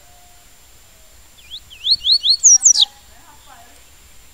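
Double-collared seedeater (papa-capim) singing the 'tui-tui' song: a quick run of loud, whistled notes that rise and fall, starting about a second and a half in and ending in a sharp falling note. A softer, lower warble follows just after.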